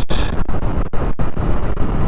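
Motorcycle riding at road speed: wind rushing over the onboard microphone over the engine's running rumble, with a few brief dropouts.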